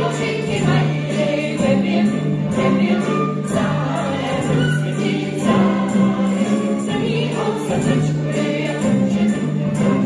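A song from a stage musical: many voices singing together as a choir over music with a held bass line and a steady beat.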